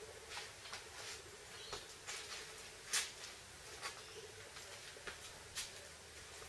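Footsteps scuffing on concrete and light clicks and rattles of a duty belt and training rifle as a man shifts his stance and turns, with one sharper click about three seconds in, over a faint steady hum.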